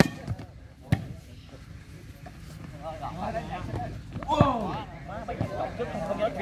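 A volleyball smacked hard by hand at the start as a player jumps to hit it, then a second sharp impact about a second later. Spectators' voices follow, with one loud shout near the middle.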